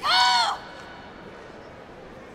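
A girl's loud, high-pitched shouted call, one held syllable of about half a second that rises and falls slightly in pitch, typical of a kata competitor announcing the name of her kata before she begins.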